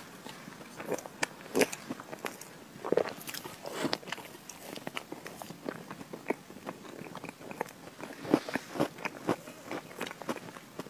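Close-miked eating of chocolate Oreo cream cake: soft biting and chewing with wet mouth clicks and lip smacks at an irregular pace, a few louder ones about a second and a half, three and eight and a half seconds in.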